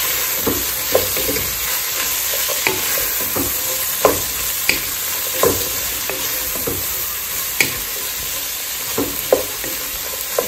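Vegetables and salt fish sizzling steadily in oil in a pot, stirred with a wooden spoon that knocks and scrapes against the pan at irregular intervals.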